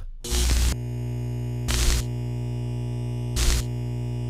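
Electronic outro sound: a short burst of hiss, then a steady low synthesizer drone made of several held tones, broken by two brief bursts of hiss, one near the middle and one near the end.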